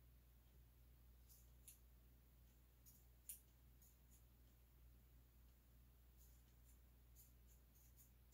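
Near silence: a steady low hum of room tone with a few faint clicks, the most distinct about three seconds in.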